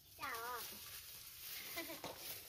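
A quavering animal call about a quarter second in, wavering up and down in pitch for about half a second, then a shorter call near the end.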